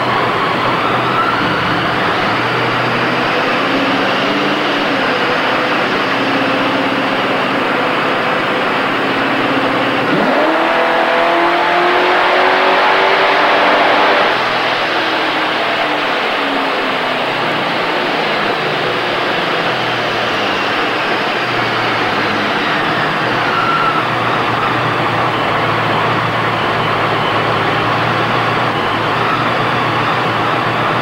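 Supercharged 408 stroker V8 in a 1993 Mustang making a dyno pull on the rollers: revs climb, jump sharply about ten seconds in, and run at full throttle, loudest, until about fourteen seconds, when the throttle closes and the revs wind down over the next ten seconds to a steady run. A thin high supercharger whine falls along with the engine as it slows.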